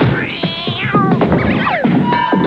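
Cartoon music with sound effects: several high pitched glides that rise and then fall over a busy backing.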